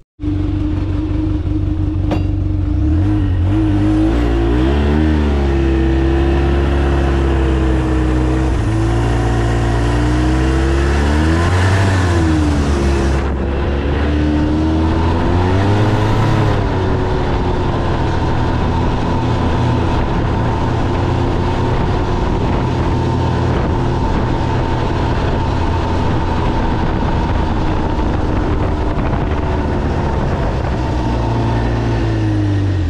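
Snowmobile engine running under way across snow, heard from the rider's seat. The engine speed rises and falls several times in the first half, then holds steady.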